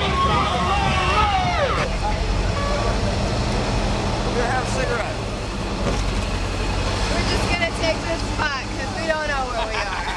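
Motor vehicle engine, most likely the parade truck's, idling with a steady low rumble, while people talk nearby in the first two seconds and again near the end.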